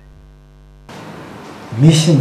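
Steady electrical hum with many evenly spaced tones in the studio recording. About a second in it cuts off sharply into a plain hiss, and a man starts speaking near the end.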